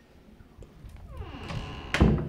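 Interior door with a lever handle swinging closed, with a brief falling tone as it moves, then shutting with a sharp latch click and a low thump near the end, the loudest sound.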